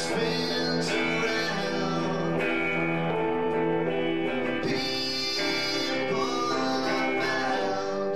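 Live music: acoustic guitar played with singing, notes held for a second or more and changing in step.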